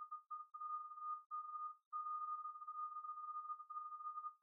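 A faint, steady single-pitched electronic tone, broken by several short gaps.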